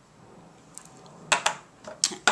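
Small objects being handled on a table: a few faint clicks, then two sharp knocks in quick succession a little past halfway, as the small lip butter tin is put down.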